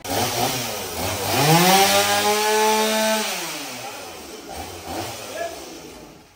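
Two-stroke chainsaw running: revved up to full throttle about a second in, held there for about two seconds, then let back down toward idle.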